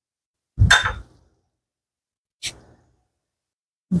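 A single short, dull knock about half a second in, then a brief faint click about two and a half seconds in, with no frying sizzle to be heard.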